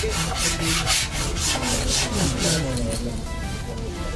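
Dry bamboo being rubbed or scraped in quick, even rasping strokes, about five a second, which die away about three seconds in.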